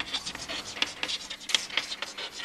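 Chalk scratching and tapping on a chalkboard as words are written, in quick, irregular strokes.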